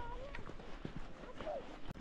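Footsteps on a gravel trail, a few soft irregular knocks, with a faint short voice just at the start.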